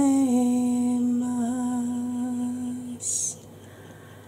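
A woman humming one long, steady note for about three seconds, wavering slightly partway through, followed by a short hiss.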